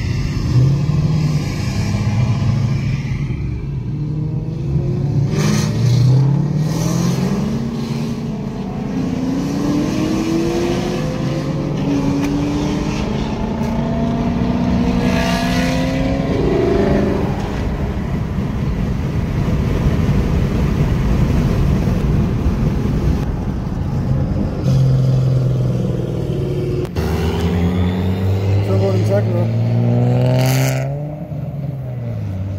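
C6 Corvette's LS3 V8, fitted with aftermarket heads and cam, heard from inside the cabin accelerating hard, its pitch climbing in several rising sweeps through the gears, then holding a steadier drone. Near the end, after a sudden cut, an engine drones at a steady pitch and then starts to rev up again.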